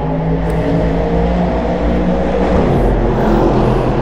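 BMW S1000RR inline-four superbike engine running at a steady idle with a deep, even rumble.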